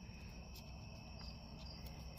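Near-quiet room tone: a faint steady low hum with a thin, steady high-pitched whine above it.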